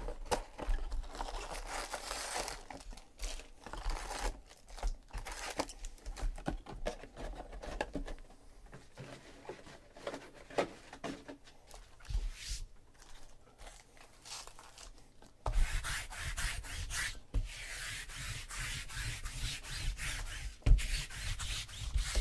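Wrapped trading card packs rustling and sliding against each other and the cardboard box as they are pulled out and stacked, with small taps as packs are set down. The rustling gets louder and busier about two-thirds of the way through.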